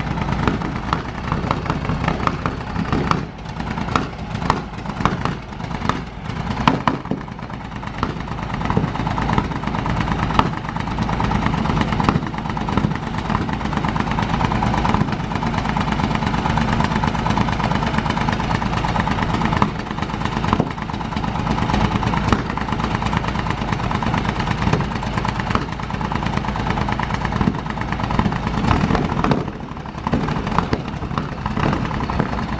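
Large engine of a vintage racing car running, firing unevenly with sharp irregular cracks for the first several seconds, then settling into a steadier run.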